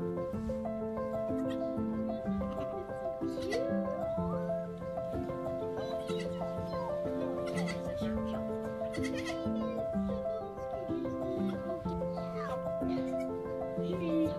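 Background music plays steady notes throughout. Over it come a couple of short, high bleats from newborn Nigerian Dwarf goat kids, one a few seconds in and another near the end.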